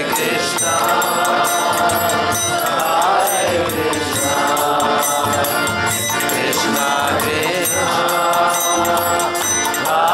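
Kirtan mantra chanting: voices singing long, held phrases of about three seconds each to a harmonium, with a violin and a steady percussion beat. By the end of the stretch the seated group is singing together.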